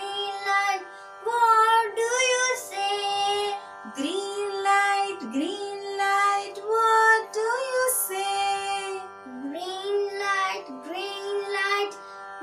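A boy and a woman singing a children's song about traffic lights in turns, in short sung phrases over steady backing music.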